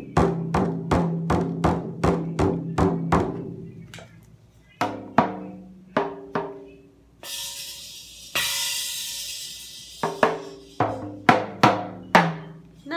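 A child's toy drum kit being played with sticks: a quick run of about ten drum hits, each leaving a low ringing hum, then a few scattered hits on the small drums. A little past halfway the toy cymbal is struck twice and rings, and a few more drum hits follow near the end.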